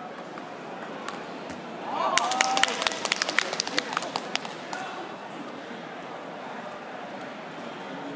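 A short burst of scattered hand clapping, about two seconds in and lasting some two and a half seconds, with a brief call at its start. It comes over the steady murmur of a large sports hall and marks the end of a point.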